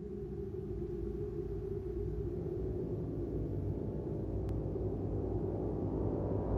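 A low, steady rumbling drone that slowly swells in loudness.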